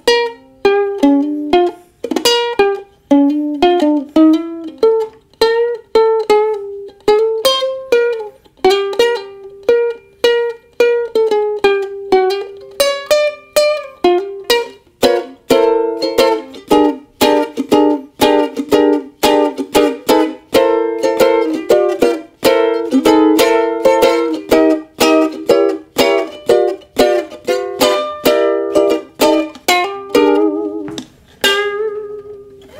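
Ukulele played solo: a picked single-note tune for about the first half, then quick strummed chords. The instrument is left untuned and its strings are worn out.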